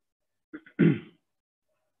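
A man clearing his throat once, a short, loud burst a little under a second in, just after a faint lead-in sound.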